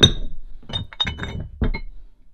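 Rusty cast-iron dumbbell weight plates clinking and knocking against each other as they are handled and stacked: a sharp clink at the start, then three more over the next second and a half, each ringing briefly.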